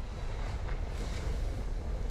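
AI-generated (Google Veo 3) ambience for a burning city: a steady rushing, rumbling noise of wind and fire.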